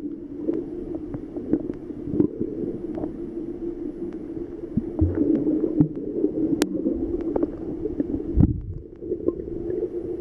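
Muffled underwater sound picked up by a submerged camera: a steady dull hum of water with scattered clicks, gurgles and a few soft thumps.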